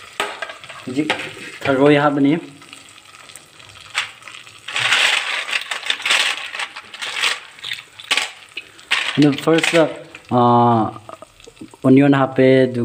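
Sliced ingredients sizzling in hot oil in an aluminium pressure-cooker pot, with occasional stirring clicks and a louder swell of sizzling about five seconds in. A voice is heard briefly a few times.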